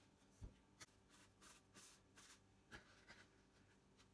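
Faint rubbing and patting of hands shaping a ball of bread dough on a floured cutting board, with a soft thump about half a second in and a light knock near three seconds.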